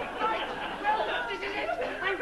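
A man's voice talking throughout, with no other sound standing out.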